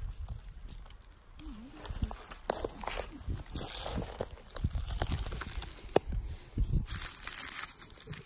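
Dry leaf litter and grass rustling and crackling as someone moves through the undergrowth, in irregular bursts with a few sharp snaps.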